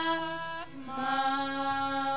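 Classical Sikh kirtan: women's voices with harmonium, holding long steady notes. About three-quarters of a second in, the held note gives way to a lower one.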